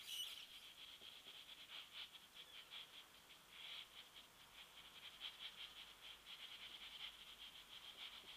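Near silence with faint, irregular soft scratching: a large powder brush sweeping bronzer over the skin of the cheek.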